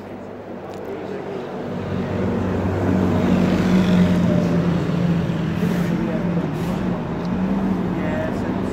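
A motor vehicle's engine running close by, with a steady low hum that grows louder over the first couple of seconds and then holds.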